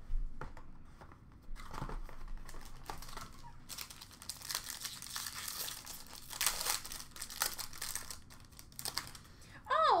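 Trading-card packaging being opened by hand: plastic crinkling and tearing with irregular rustling and small clicks of cards and box pieces being handled, busiest in the middle. A voice begins just before the end.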